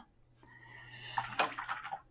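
Paintbrush swished in a jar of water, with a short watery splashing and clicking a little over a second in.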